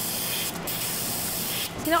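Airbrush spraying red colour into a polycarbonate bonbon mould: a steady hiss with a brief break about half a second in, stopping just before the end.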